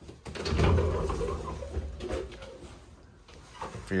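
Bifold closet doors being pulled open: a low rumble with a few knocks, loudest about half a second in and fading away over the next two seconds.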